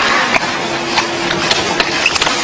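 Steady mechanical noise of factory machinery with a faint steady hum, broken by a few sharp clicks of card decks being handled.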